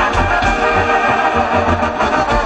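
Loud live band music from a dance, with a steady bass beat about twice a second.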